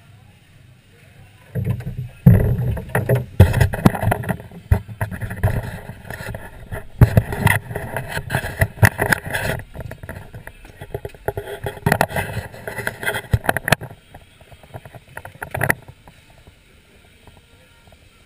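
Handling noise from a GoPro camera in its housing as it is gripped and moved by hand: irregular rubbing, scraping and knocks on the case, starting about two seconds in and dying away after a last knock near the end.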